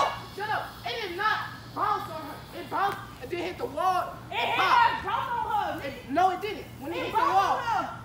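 Young people's voices talking and calling out to each other during play, with no clear words.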